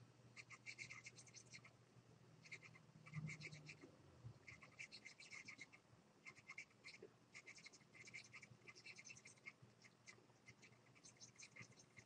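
Faint scratching of a stylus dragged across a graphics tablet in short repeated back-and-forth strokes, over a low steady hum.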